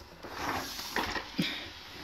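Soft rustling and handling noise as a wallpaper steamer plate is lifted off the carpet and a towel is pulled away, with a couple of light knocks about a second in.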